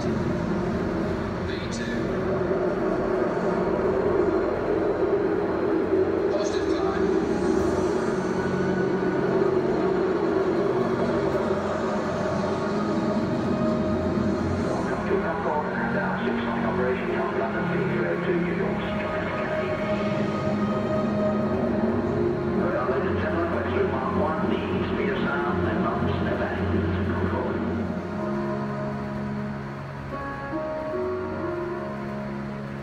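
Soundtrack of a Concorde film played over loudspeakers in a large hangar: a steady rumbling drone of jet engine noise under music. Indistinct voices join in over the second half.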